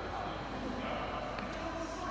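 Indistinct background voices, with a steady low hum underneath.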